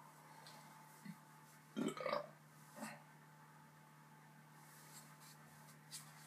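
A man burping about two seconds in, with a shorter burp just under a second later, while chugging a gallon of milk.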